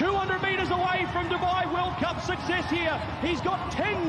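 Speech only: a male race caller's fast, continuous commentary on a horse race, in a high, strained voice.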